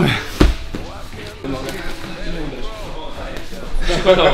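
A single heavy thud about half a second in, a strike landing on the body in kickboxing sparring, followed by low voices.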